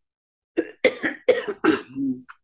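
A man coughing four times in quick succession, starting about half a second in.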